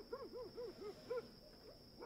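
Faint bird call: a quick run of about six short hoots, each rising and falling in pitch, ending a little over a second in.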